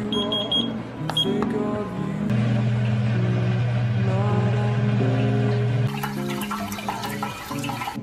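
Background guitar music throughout. A digital kitchen timer beeps several times in quick succession about a second in, and from about six seconds in, water pours and splashes into the sink as the strainer insert of a pasta pot is lifted to drain boiled noodles.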